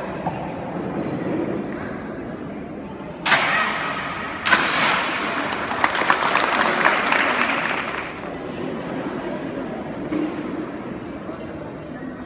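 A sharp crack as a stack of tiles is broken with an elbow strike, a second impact about a second later, then audience applause for about three seconds.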